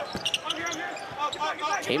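A basketball dribbled on a hardwood court, a few short bounces, over the steady murmur of an arena crowd.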